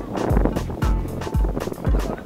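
Background music with a steady beat: a deep bass hit about twice a second, with pitched melody or vocal lines above.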